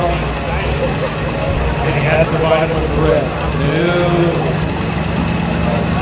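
A green-and-yellow John Deere-style farm tractor's diesel engine running steadily while hitched to a tractor-pull sled, with an indistinct voice over it.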